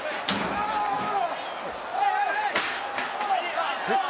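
Steel folding chair banging twice, about two seconds apart, each a sharp metallic bang, with arena voices underneath.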